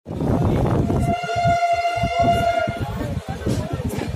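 Indian Railways train passing slowly, with a low rumble and uneven clatter from the coaches. About a second in, the train horn of its WAP-7 electric locomotive sounds one steady note for nearly two seconds.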